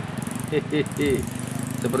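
A small engine running steadily at low speed, a constant low drone, with a man's voice saying a few short syllables over it and then speaking near the end.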